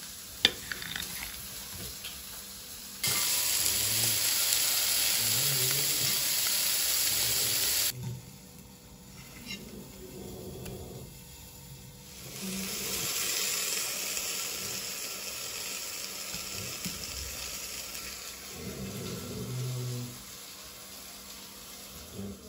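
Food sizzling in a hot frying pan: loud from about three seconds in, cutting off abruptly about five seconds later, then sizzling again more quietly for most of the second half. Near the start, a sharp click of a knife blade on a plate.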